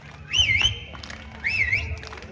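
A shrill whistle sounds twice, about half a second in and again near the end. Each time it swoops up, dips and rises again, then holds its note briefly. Low thuds sound underneath.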